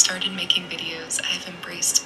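A woman speaking softly, close to a whisper, with sharp hissing 's' sounds.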